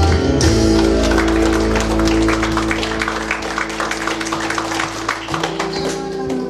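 A live church band holds the closing chord of a gospel song while the congregation applauds over it. The chord shifts lower about five seconds in.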